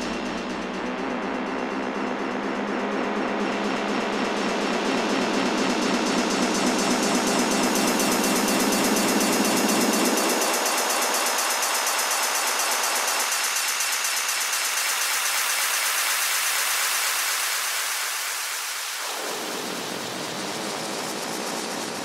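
Synthesized noise sweep in a house music mix: a loud, steady hissing wash whose filter opens upward over the first few seconds. The bass drops away about halfway through, the lower middle thins out soon after, and the lows come back near the end.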